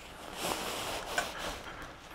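Faint rustling of the Ozark Trail Cocoon 250 down mummy sleeping bag's fabric as it is handled, swelling softly about half a second in and again around a second in.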